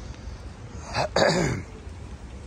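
A man clears his throat with a short cough about a second in: a brief burst, then a louder, longer voiced part that falls in pitch.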